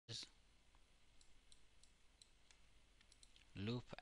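Faint computer mouse clicks, several spaced irregularly over a few seconds, over near-silent room tone, with a short louder sound right at the start.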